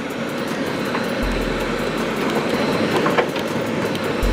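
Steady road and wind noise heard from inside a moving car.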